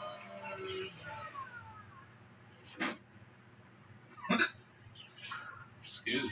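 A man hiccuping, twice in sharp bursts about a second and a half apart, the second louder, with fainter catches after. Cartoon voices from a television play underneath, mostly in the first two seconds.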